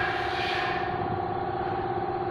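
Steady machine hum holding a constant pitch, the background of a motorcycle repair shop, with a faint hiss that stops a little under a second in.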